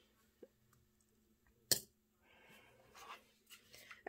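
A tea light in its metal cup is dropped into a glass votive holder, giving one sharp click a little under two seconds in, with a fainter tap before it and soft handling noise after.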